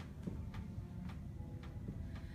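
A faint, steady ticking beat, a little under two ticks a second, over a low rumble of room noise.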